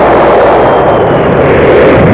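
Loud, steady rumble of a huge explosion, a dense rushing noise with no breaks.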